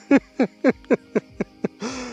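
A man laughing in delight: a quick run of about seven short "ha" bursts, each falling in pitch, about four a second.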